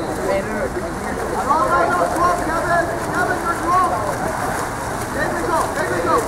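Voices calling and shouting across a water polo match, with no clear words, over a steady rushing noise of players splashing in the pool. The shouts come in a cluster from about a second and a half in to about four seconds, and again near the end.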